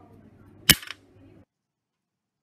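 A magnet, slowed by eddy currents in an aluminium pipe, reaches the bottom and lands with one sharp clack, followed by a brief rattle as it settles.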